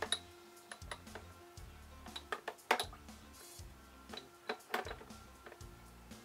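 Background music with steady notes and bass, over a handful of sharp clicks and clinks at uneven times, the loudest a little before the middle: a steel part knocking against a plastic tub as it is worked in cold-blue solution.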